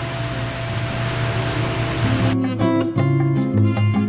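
Electric stand fan blowing, a steady rush of air with a low hum, under background music. A little past halfway the fan noise cuts off suddenly and plucked-guitar music plays on alone.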